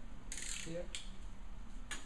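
Handling noise of craft materials on a table: a short rustle followed by a couple of sharp light clicks about a second apart.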